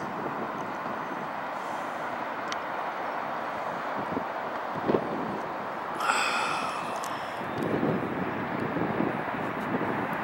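A steady outdoor rush of distant traffic noise, with a short tick about five seconds in and a brief breathy sound about six seconds in.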